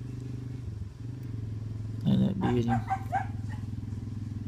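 A dog barking several times in quick succession about halfway through, over a steady low motor hum.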